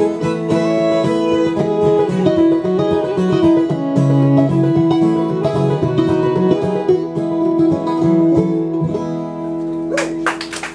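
Instrumental bluegrass string-band outro, with a bowed fiddle playing the melody over strummed acoustic guitar, resonator guitar and upright bass, and no singing.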